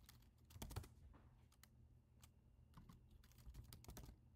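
Faint keystrokes on a computer keyboard: a short cluster of key presses about half a second in, a few single presses, then a quicker run of presses near the end.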